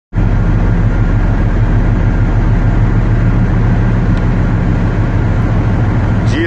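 Tugboat's diesel engines running steadily under way, a deep even drone heard on deck, with a steady hiss of wake water and wind above it.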